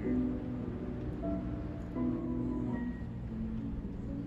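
Background music of slow, sustained notes that change every second or so.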